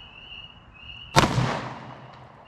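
A single 9mm pistol shot a little over a second in, sharp, with a short echoing tail.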